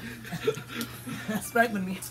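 Soft chuckles and a few short spoken fragments from people around a table.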